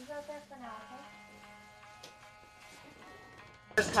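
Faint voices over quiet background music with held notes; loud speech starts abruptly near the end.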